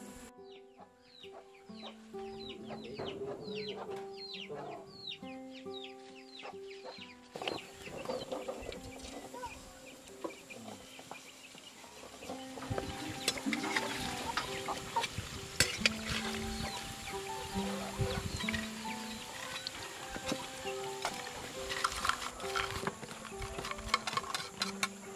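Background music with a simple held melody plays throughout. During the first seven seconds there is a quick run of short, falling chicken calls. From about halfway, sweet potato slices are frying in hot oil in a steel wok, with a steady crackle and sputter.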